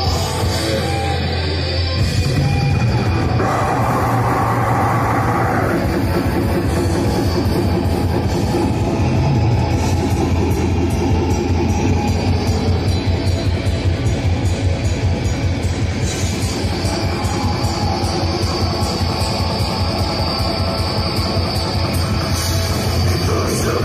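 Live black metal band playing loud: distorted electric guitars over a drum kit, with fast, even drumming through the second half.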